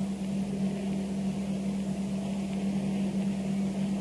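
A steady low hum on one pitch with a faint hiss beneath it, heard in a pause between sentences of speech.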